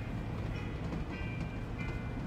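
Steady low rumble of a school bus running, heard from inside the cabin, with light rattles. Faint music plays over it.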